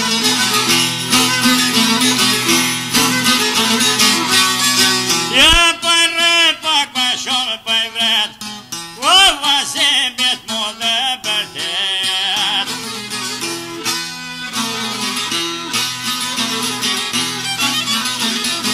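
Albanian folk music instrumental passage: plucked-string accompaniment over a steady bass pattern. From about five seconds in, a bending, ornamented lead melody with wide vibrato takes over for several seconds, then the accompaniment carries on alone.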